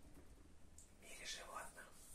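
Near silence: room tone, with one faint, breathy whisper-like sound from a man about a second in.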